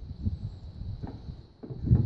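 Low knocks and thumps of an AR-15 barrel and upper assembly being handled and set down on a wooden bench, with a small click about halfway and the heaviest thump near the end.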